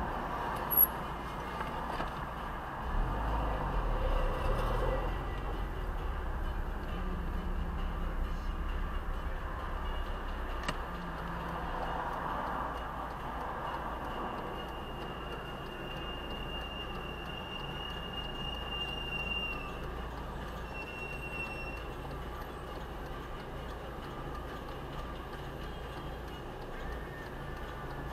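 Low steady rumble of a car's idling engine and passing traffic heard from inside the cabin, rising a little a few seconds in as the car moves up, then settling while it waits. Later a thin high steady tone sounds for about five seconds, then once more briefly.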